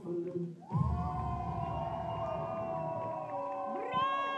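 A crowd of voices shouting and cheering together, breaking out loudly about a second in and held to the end.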